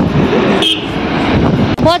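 Wind rushing over the microphone and road noise from a moving scooter in traffic, with brief talk near the end.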